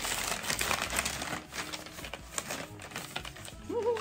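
Tissue paper rustling and crinkling as it is pulled out of a packing box and lifted up, an uneven run of crackles.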